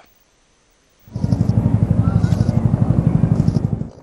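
Military helicopter in flight, its rotor beating in a fast, even rhythm of about a dozen pulses a second; the sound cuts in about a second in.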